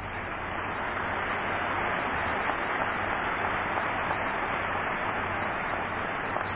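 A large audience applauding, a steady, dense clapping that holds through the pause.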